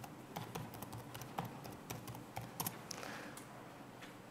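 Typing on a computer keyboard: an uneven run of faint keystrokes as a web address is entered.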